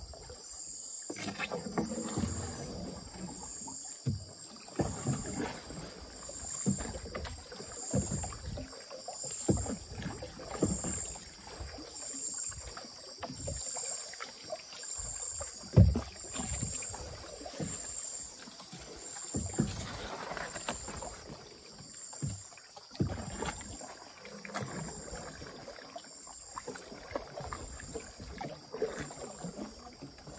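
Wooden canoe being paddled through flooded forest: paddle strokes dip and splash with short knocks against the hull about once every second or so, one sharp knock loudest about halfway through. A high-pitched insect call pulses steadily about twice a second behind it.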